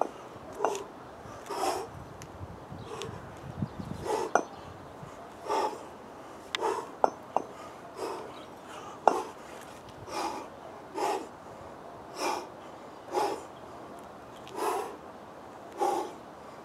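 A man breathing hard through a kettlebell complex, a sharp forceful exhale about once a second with each rep. A few short sharp clicks come in between.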